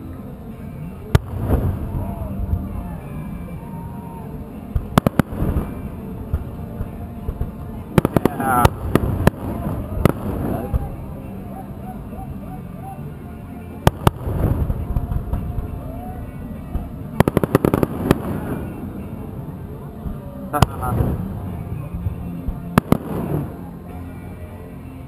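Distant aerial fireworks shells bursting. Sharp bangs come singly and in quick clusters about 8–9 and 17–18 seconds in, each followed by a low rumbling echo.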